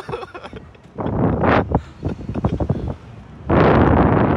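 Wind buffeting the on-ride camera's microphone as the Slingshot capsule swings and flips on its bungee cords, coming in several rushes, the loudest near the end.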